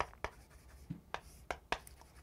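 Chalk writing on a chalkboard: a quick series of short, sharp taps and strokes, about six in two seconds, as a formula is written.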